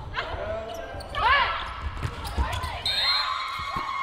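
Indoor volleyball rally: the ball struck in play, with short high-pitched chirps about a second in and a longer held squeal near the end, typical of players' shoes squeaking on the court, over players' calls.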